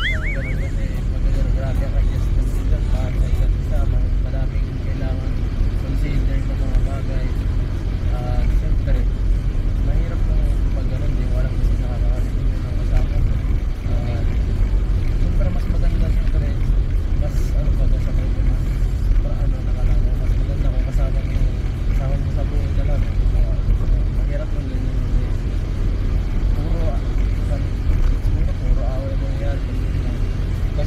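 Steady low rumble of a car being driven, heard from inside the cabin, with men talking over it.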